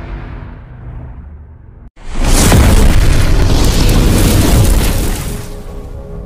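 Cinematic logo-intro sound effect: a rumbling whoosh dies away, then about two seconds in, after a brief silence, a loud explosion-like boom swells and holds for about three seconds before fading. Steady chiming tones come in near the end.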